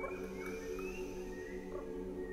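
Choir and orchestra holding a long, soft chord, with short rising chirps sounding above it several times.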